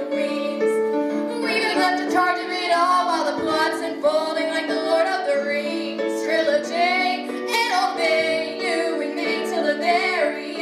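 Two young female voices singing a musical theatre duet into microphones, over an accompaniment of held chords.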